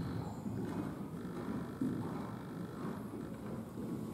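Hoofbeats of a horse cantering on the sand footing of an indoor arena, dull low thuds in a steady rhythm.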